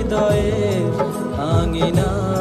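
A Bengali pop song: a melody sung over a steady kick-drum beat.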